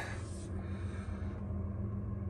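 A low, steady background hum with faint rustling from a phone being handled and moved.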